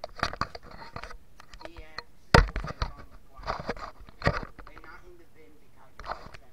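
Low speech broken by handling knocks and clatter as a handheld camera is moved around a plastic toy wrestling ring. There is one heavy thump about two and a half seconds in.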